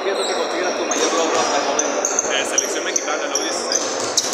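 Basketballs bouncing on a gym court, a scatter of short thuds under the talk.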